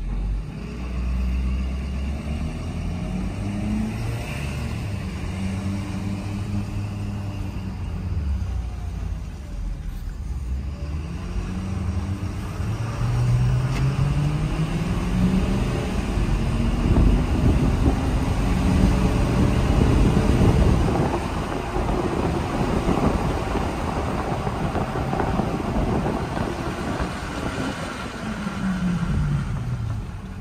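2016 Ford F-550's 6.7-litre Power Stroke V8 turbo-diesel heard from inside the cab on a drive, with road noise underneath. The engine note rises in pitch several times as the truck accelerates through the gears, is loudest around the middle, and drops near the end as the truck slows.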